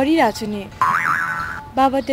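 A comic 'boing' sound effect about a second in: a short springy tone lasting under a second, whose pitch jumps up and then wobbles back down.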